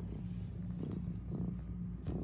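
Domestic tuxedo cat purring steadily and low while kneading a fleece bed.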